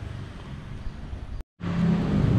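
Steady low background hum with a faint engine-like drone, broken by a brief total dropout about one and a half seconds in where two shots are joined.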